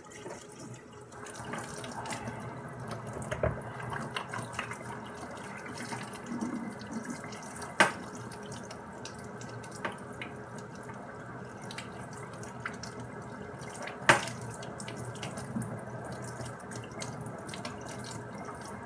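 Kitchen tap running steadily into a sink, starting about a second in, with two sharp knocks, one near the middle and one later.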